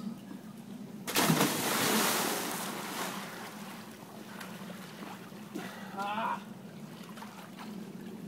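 A person jumping into a backyard swimming pool: a sudden loud splash about a second in, then churning water that fades over the next couple of seconds. A short shout follows near the end.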